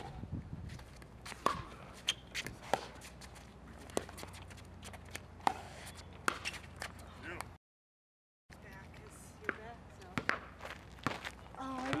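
Pickleball rally: sharp, irregular pops of paddles striking the plastic ball, with ball bounces on the hard court and footsteps. The sound cuts out completely for about a second past the middle.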